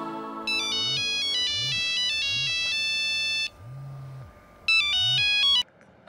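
Mobile phone ringtone: a melodic electronic tune of stepping notes plays for about three seconds, pauses, then plays again briefly and cuts off abruptly when the call is answered.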